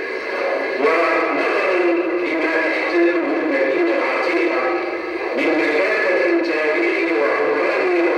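A man's voice amplified through a microphone, reading aloud in Arabic in long, drawn-out phrases.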